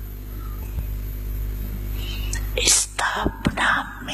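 A steady low hum with no speech for the first two and a half seconds, then a few slow, breathy spoken syllables from a woman into a microphone near the end.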